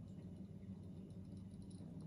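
Quiet room tone: a steady low hum with nothing else standing out.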